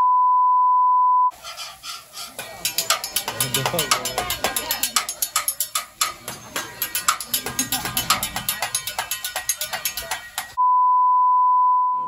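A steady 1 kHz test tone for about a second and a half, then hibachi griddle sounds: metal spatulas clicking and clanking rapidly on the steel cooktop amid voices. Near the end the 1 kHz test tone returns for over a second.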